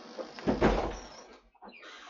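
A cat calling: a rough call lasting about a second and a half, loudest about half a second in, then a softer sound near the end.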